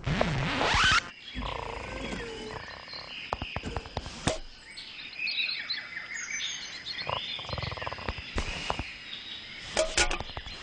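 Animated-cartoon jungle sound effects: a loud rising whoosh in the first second, then a chorus of croaking and chirping animal and insect calls with scattered clicks over a thin, steady high tone.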